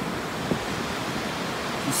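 Steady wash of surf on the beach, an even hiss with no rhythm, and a faint tick about half a second in.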